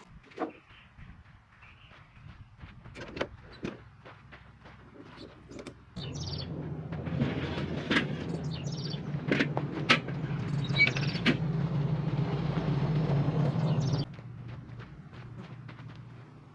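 Aluminium loading ramp being slid out of a pickup bed, a steady metal scraping with several sharp clanks that starts about six seconds in and stops suddenly near the end. Birds chirp faintly before it.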